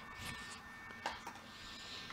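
Faint handling noise with a single small click about a second in, from a hand working a battery tester's alligator clamp at the battery terminals.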